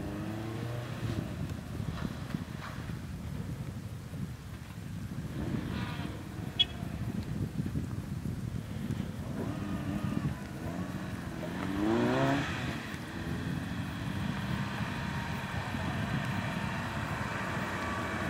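Renault Clio RS four-cylinder engine revving and easing off as the car is driven hard through a cone slalom. It is heard from a distance at first, with a rising rev about twelve seconds in, and grows louder as the car comes back near the end. A single sharp click sounds about six and a half seconds in.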